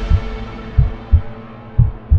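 Heartbeat sound effect: paired low lub-dub thumps, about one pair a second, over a steady held electronic tone.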